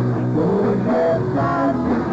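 Hard rock band playing live, with an electric guitar line to the fore over the band.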